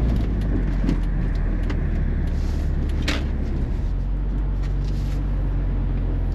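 BMW E46 M3's S54 inline-six running as the car is driven slowly, heard from inside the cabin as a steady low drone, with a short click about three seconds in.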